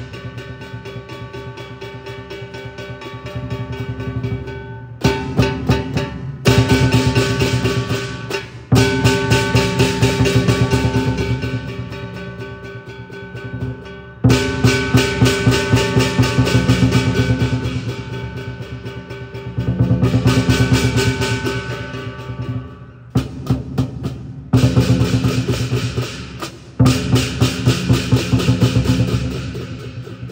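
Live lion dance percussion: a large Chinese lion drum beaten in fast rolls, with cymbals clashing and a hanging gong ringing over it. The rhythm breaks off suddenly several times and starts again.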